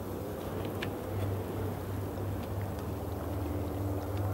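Steady low hum with a faint background hiss, and a faint click about a second in.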